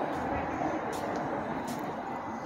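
Steady background noise of traffic and indistinct voices, with a couple of faint light clicks.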